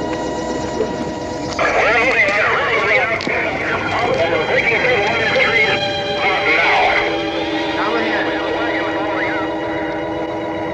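A steady, droning music chord with a crowd of indistinct, overlapping voices rising over it from about a second and a half in.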